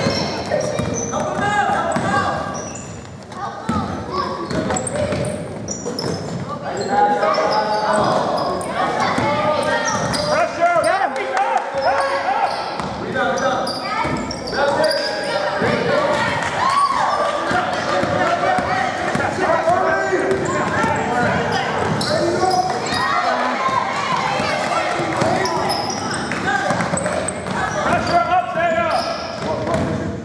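A basketball bouncing on a hardwood gym floor as it is dribbled. Voices of players and spectators carry on throughout, echoing in the large gym.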